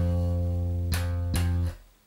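Electric bass played slap style. A low note rings and is struck again twice about a second in with sharp, bright attacks, then is damped and cut off just before the end.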